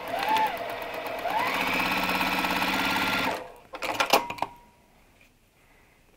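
Juki sewing machine stitching a seam through small fabric strips: it starts slowly, speeds up about a second in, runs at a steady speed and stops after a little over three seconds, followed by a few short clicks.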